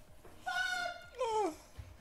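A woman's high-pitched cry of pain: a held wail about half a second in, then a second cry that falls steeply in pitch.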